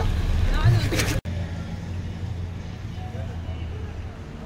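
Motorcycle engine idling with a steady low hum, heard after a short bit of talk that is cut off about a second in.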